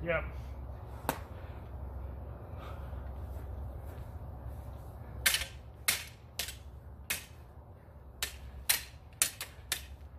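Steel backsword blades clashing: one sharp clash about a second in, then a quick exchange of about ten ringing strikes over the second half.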